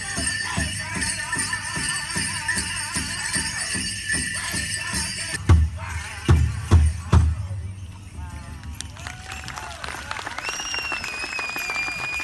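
Powwow drum beating a steady pulse under high-pitched singing, ending about halfway through with four loud, hard drumbeats. After that, dancers' bells jingle softly, and a thin whistling tone sounds near the end.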